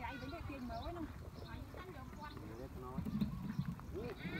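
People talking among themselves over a steady low rumble.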